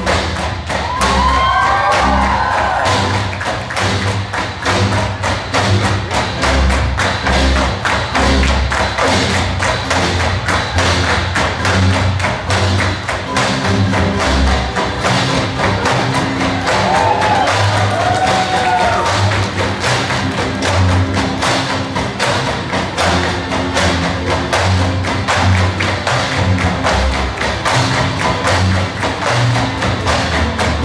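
Tinikling music with the rhythmic thuds and clacks of bamboo poles being tapped on the floor and struck together at a fast tempo. Voices briefly call out twice, near the start and about midway.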